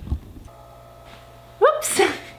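Low wind rumble on the microphone that cuts off about half a second in, then faint room tone with a steady electrical hum, and a person's voice starting near the end.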